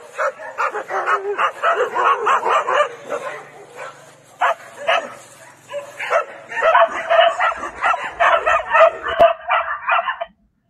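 Dogs barking and yipping in quick repeated calls, in two long runs with a sparser gap between, heard thin with the low end missing, as played back from a video over a call.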